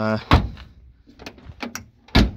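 A car door being shut on an old Ford Capri. There is one heavy thunk about a third of a second in, then a few light clicks and knocks near the end.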